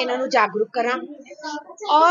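A woman's voice speaking, high-pitched and swinging widely in pitch.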